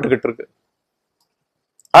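A man talking, his phrase ending about half a second in, then dead silence for about a second and a half, with talking starting again abruptly near the end.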